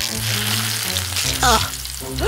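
Electric crackling and sizzling sound effect of a potato battery overloading with too much power, stopping after about a second, over background music with a low bass line.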